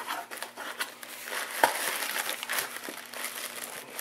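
Cardboard box flaps being pulled open and plastic packing wrap crinkling under a hand, with a sharp snap about one and a half seconds in.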